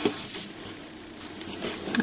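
Faint rustling of ribbon being handled and looped around a marker, over low room hiss.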